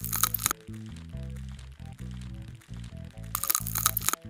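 Crackling, crunchy sound effect of ticks being scraped off skin with a scalpel, in two short bursts of rapid clicks, one at the very start and one near the end. Background music with a slow, low melody runs throughout.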